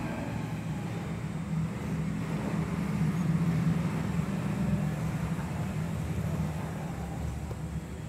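Steady low background rumble, swelling slightly around the middle.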